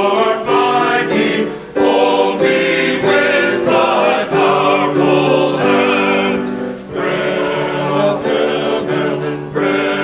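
Men's choir singing a hymn in held phrases with short breaks between them, accompanied by piano.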